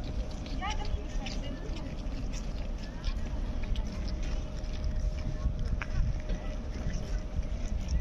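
Outdoor street ambience of a pedestrian square: indistinct talk of passers-by, a low rumble on the microphone and a faint steady hum.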